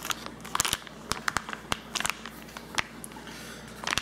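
Plastic wrapping crackling in scattered, irregular sharp clicks as hands handle and press down a plastic-wrapped mushroom substrate block in a bowl of water.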